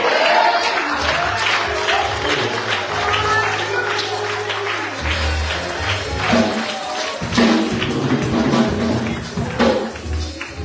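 Church praise music: held chords over a low bass note, with steady hand clapping and a tambourine keeping time, and voices calling out or singing over it.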